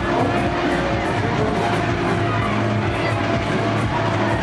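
Loud fairground music with a steady beat, mixed with the continuous running of funfair ride machinery.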